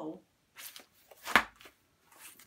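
Large paper sheets being handled and shuffled on a table: several short paper rustles, with one louder flap a little past the middle.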